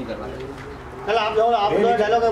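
A man's voice talking, loud from about a second in, after a quieter first second.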